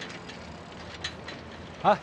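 Busy street ambience: a steady background hiss with a few faint clicks and ticks. A man's voice calls out "hey" near the end.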